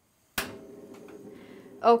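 Silence broken by a single sharp click about a third of a second in, then a steady low hum of kitchen background until a woman starts speaking near the end.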